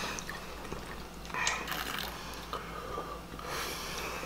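Bourbon glugging and sloshing in a glass bottle as it is swigged straight from the neck, with gulps and swallowing in a few short stretches.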